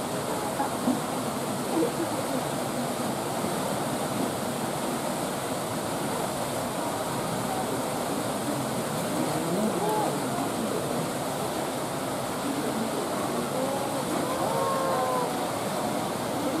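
Steady rush of water splashing into a pool, with people's voices chattering over it; a few voices stand out around ten seconds in and again near the end.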